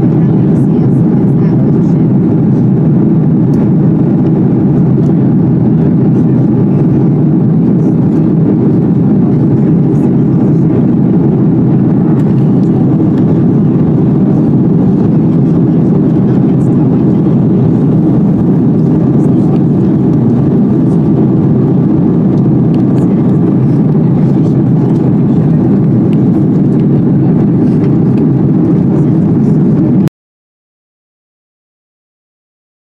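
Steady, loud cabin noise of an Airbus A330-200 airliner in flight, heard from a window seat over the wing: an unbroken rumble of engines and airflow, strongest in the low range, holding an even level throughout.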